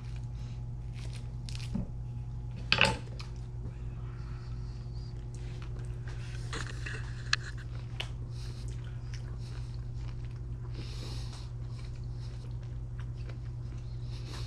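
A person chewing a bite of fresh stone fruit close to the microphone, with small wet clicks and smacks and one brief louder sound about three seconds in. A steady low electrical hum runs underneath.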